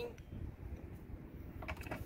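Low, unsteady rumble of wind on the microphone, with one faint click.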